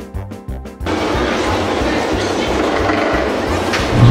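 Rhythmic background music cuts off about a second in, giving way to the steady rolling rumble and hiss of a steel roller coaster train running along its track.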